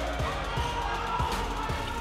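A basketball dribbled on a hardwood court, with music playing in the background.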